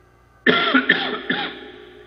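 A man coughing three times in quick succession, starting about half a second in.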